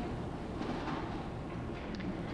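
A pause in speech: steady room tone of a lecture-hall recording, a low hum with hiss.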